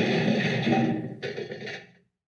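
A crash sound effect, a loud noisy clatter that fades in its second half and cuts off suddenly at the end.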